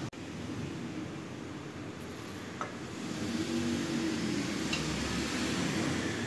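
Steady background whir of a fan or similar machine in a room, growing a little louder about three seconds in, with two faint light clicks.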